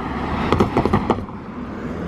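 An SUV driving past at close range with a steady tyre and engine sound. A few short knocks come about half a second to a second in.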